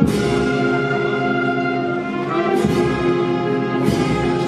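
Brass band playing slow, long-held chords, with a few sharp percussion strokes.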